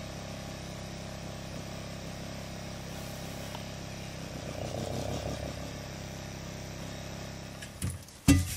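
Steady low mechanical hum that swells slightly around the middle and fades just before the end.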